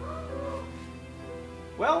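Soft background music of sustained, held chords under a pause in the dialogue, with a man saying "Well" near the end.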